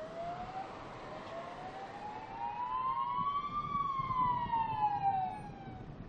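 An emergency vehicle's siren wailing: one slow rise in pitch over about three and a half seconds, then a fall. It is joined by the vehicle's road noise, which grows loudest near the top of the wail and then fades as it passes.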